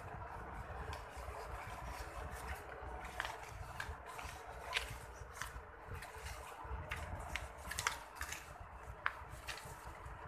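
Sheets of paper being handled and shuffled close to a clip-on microphone: irregular rustles and crinkles, over a low steady hum.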